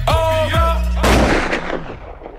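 Hip-hop beat with a gliding synth melody over deep bass, cut off about a second in by a sudden loud gunshot-like blast. The blast is a sound effect, and its echo fades away over the following second.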